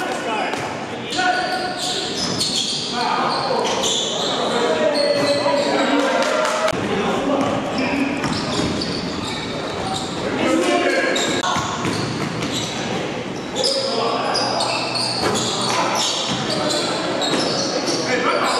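A basketball bouncing on a gym floor amid players' shouts and chatter, echoing in a large hall.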